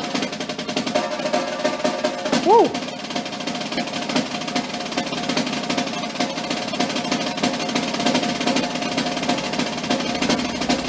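Concert snare drum played with sticks in a fast, unbroken stream of strokes, a sustained double-stroke roll. A man whoops "Woo!" once, about two and a half seconds in.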